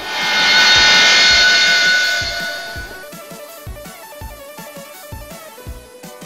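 A motorhome drives close past, a loud rush that fades over the first three seconds, over background music. After that only the music is left: a guitar track with a steady beat of about two per second.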